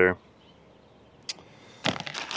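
A single light click about two-thirds of the way in, then the crinkle of a plastic zip-lock bag being picked up near the end.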